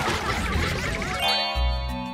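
Cartoon sound effects: a noisy clattering burst, then a ringing bell-like ding that starts a little past the middle and is held to the end, over light background music.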